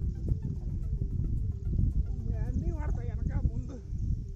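Voices calling out in a few short phrases in the second half, over a steady low rumbling noise and water being disturbed as men wade and swim, pushing a raft of plastic jerrycans.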